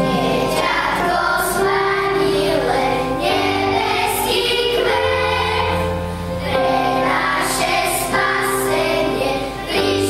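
Children's choir singing a Slovak Christmas carol together, with piano accompaniment.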